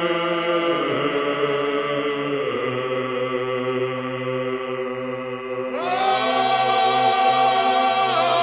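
Choir chanting slowly in several voices, holding long notes over a steady low drone, with a new, louder chord coming in about six seconds in.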